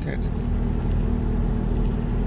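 Steady low rumble of a car's engine and road noise heard inside the cabin, with a constant low hum.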